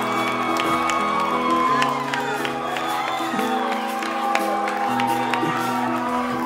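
Live band playing held, slowly changing chords while a comedy-club audience cheers and whoops.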